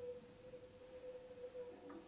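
A single quiet, steady sustained note from a cello, with a short click near the end.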